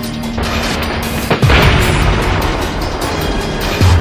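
A loud explosion at the shot-at target, about a second and a half in: a sudden blast that dies away over a couple of seconds. Background music runs throughout.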